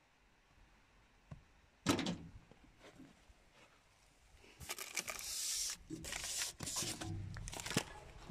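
A parcel-locker compartment door unlatching with a single sharp clack about two seconds in. From about the middle on, a cardboard parcel scrapes and knocks as it is pulled out of the metal compartment.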